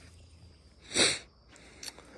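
One short sniff, an intake of breath through the nose, about a second in, with faint background hiss around it.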